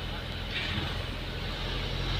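Steady road and engine noise of a moving car, heard from inside its cabin as a low, even rumble.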